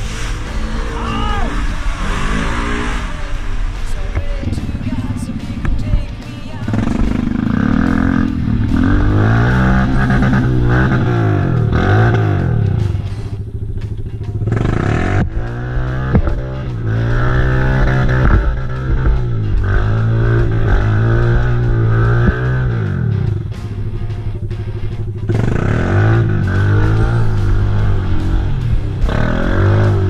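Quad bike (ATV) engine revving up and falling back again and again, about once every second or two, as it is ridden through mud. Music plays along with it.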